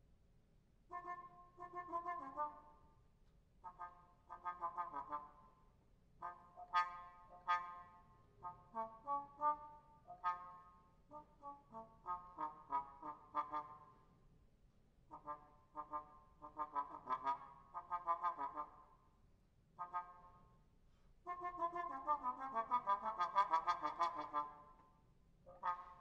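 Muted bass trombone playing short, detached phrases of quick notes in a high register, separated by brief pauses, with a longer, fuller phrase near the end.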